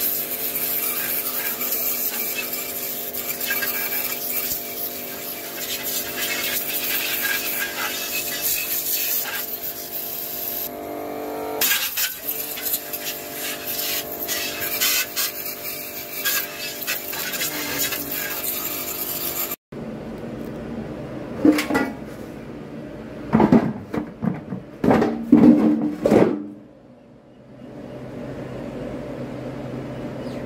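Pressure washer running: a steady motor hum under the hiss of its water jet spraying a stainless-steel washing-machine drum, with a brief change in pitch about twelve seconds in. The sound cuts off abruptly about two-thirds of the way through, and a few loud knocks and clatter follow.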